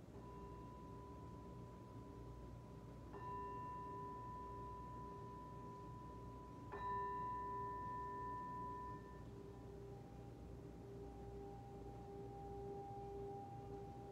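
Tibetan singing bowl struck three times, about three seconds apart, each strike renewing a steady, sustained ring; the third strike is the loudest, and in the second half the ringing settles onto a slightly lower tone as it fades.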